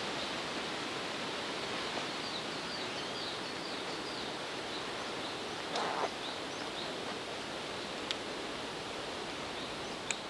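Forest ambience: a steady rushing background with a small bird's quick, high, falling chirps repeated through the first few seconds. There is a brief rustle just before the middle and a single faint click later.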